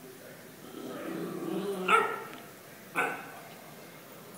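A dog growling low for about a second, then two sharp barks about a second apart, as it guards a bone from a second dog.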